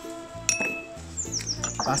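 A single sharp clink of tableware about half a second in, with a brief high ring, over light background music.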